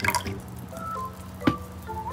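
Vinegar being poured from a plastic bottle into a plastic cup, dripping and trickling, with one sharp click about one and a half seconds in.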